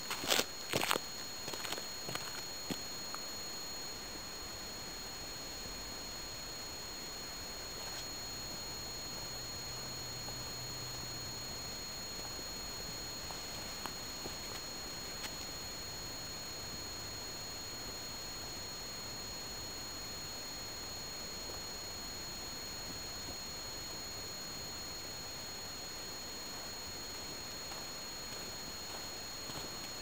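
Near-quiet ambience with no wind: a steady faint hiss with two constant high-pitched whines from the recording camera's own electronics, and a few knocks in the first three seconds.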